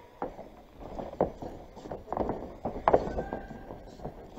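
Live ring audio from the fight: several sharp knocks or slaps spread across a few seconds, with brief shouted voices in between.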